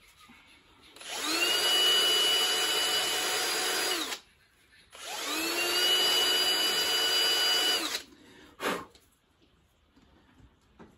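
Handheld rotary grinder run twice for about three seconds each, its whine climbing as it spins up, then holding steady before cutting off. It is being used to grind back the outlet bevel of a 4178-40 carburetor's primary chamber.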